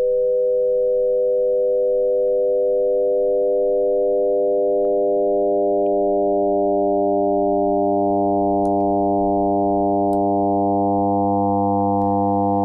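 Steady FM synthesizer tone from Native Instruments Absynth 5: a 500 hertz sine carrier frequency-modulated by a 100 hertz sine. The modulation index is slowly turned up, so side tones 100 hertz apart grow in around the carrier, from 100 up to about 1,200 hertz, and the single pitch gradually fills out with more overtones.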